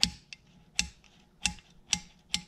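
Sharp metal clicks from the hand-worked control linkage of a rebuilt Farmall H Lift-All hydraulic pump: four clacks about half a second apart as the freshly oiled parts move freely.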